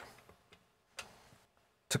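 A single short click of a button pressed on a Kilpatrick Audio CARBON step sequencer's front panel, about a second in, against an otherwise quiet background.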